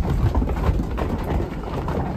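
A mob of ewes trotting through a woolshed's wooden pens and slatted floors: a dense, irregular clatter of many hooves over a low rumble.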